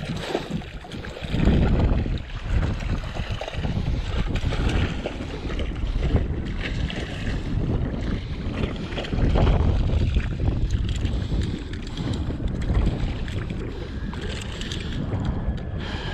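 Wind buffeting the microphone, a low rumble that swells and fades in gusts, loudest about one and a half seconds in and again around nine seconds in.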